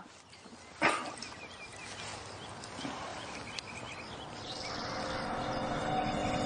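A sudden animal-like sound about a second in, followed by outdoor ambience with faint small chirps and a few sharp clicks. Eerie music swells in near the end.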